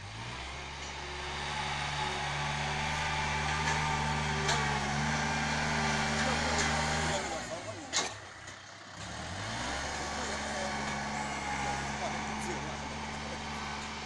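Kubota farm tractor's diesel engine running steadily under work. Just past halfway the engine note drops away for about a second with a sharp click, then picks up again and runs on steadily.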